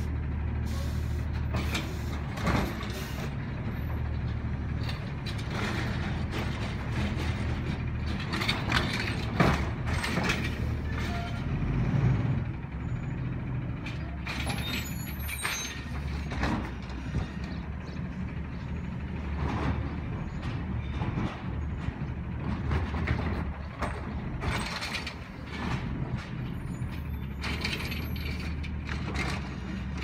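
Automated side-loader garbage truck at work: its diesel engine runs steadily while the hydraulic arm and carts make repeated clanks, creaks and thuds, with short hissing bursts scattered through, the loudest about nine to twelve seconds in.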